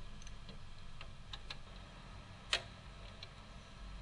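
Light, scattered clicks of plastic and metal parts being handled in a car's engine bay, with one sharper click about two and a half seconds in and another at the very end. The engine is not running.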